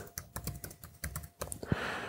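Typing on a laptop keyboard: a quick, irregular run of key clicks as a password is re-entered after a typing slip.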